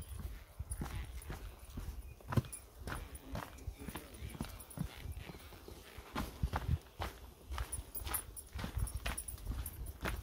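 Footsteps on a rocky dirt trail: irregular crunching and tapping steps on stone and grit, over a steady low rumble.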